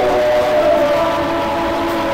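Live gospel worship music on a long sustained chord: a few steady tones held through without any beat.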